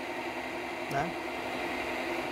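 Electric pump running with a steady hum as it draws filtered honey out through a hose.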